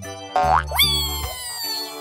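Cartoon sliding sound effect over children's background music. A quick rising glide is followed by a long, slowly falling whistle-like tone, marking a character's slide down a playground slide.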